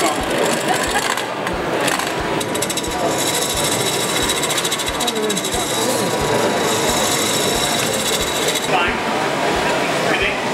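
Wood lathe spinning a large wooden bowl blank while a gouge cuts its face: from about three seconds in, a steady high cutting hiss with a fine fast chatter, ending just before the last second. Low regular thumps about twice a second run under it.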